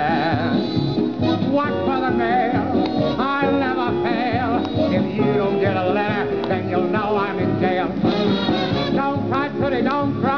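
Dance band with brass playing a lively passage of an old popular song, with no words sung, heard as the playback of a vinyl LP on a turntable.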